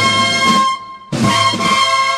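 Cornetas y tambores band, Spanish Holy Week bugles and drums, playing a procession march: bugles hold long chords over the drums. The sound breaks off briefly about three quarters of a second in, then the bugles come back in.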